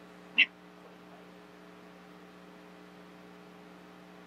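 Faint steady electrical hum through the microphone and sound system, with one brief, sharp, high-pitched sound about half a second in.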